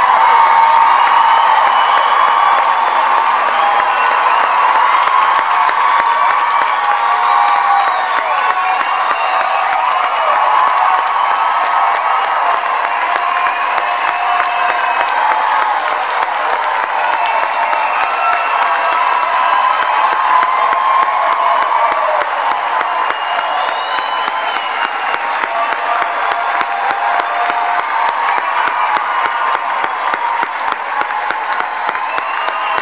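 Large concert audience applauding and cheering, with whoops and shouts scattered through it, easing off gradually. The last sustained notes of the music fade out in the first few seconds.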